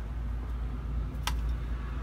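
A steady low rumble, with a single sharp click just over a second in as cleaning-product containers and an aerosol can are handled.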